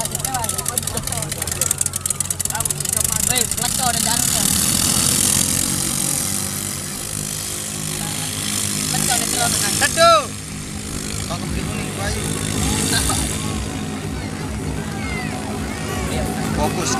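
Racing boat's engine running hard and steady as the boat speeds across the water, with people shouting over it and one loud shout about ten seconds in.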